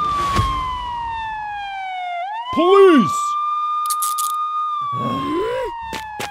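A police siren wails, its tone holding and then sliding slowly down before sweeping back up about two seconds in, then falling again near the end. A thud comes just after the start, and a loud, brief sound that rises and falls in pitch cuts in about halfway through.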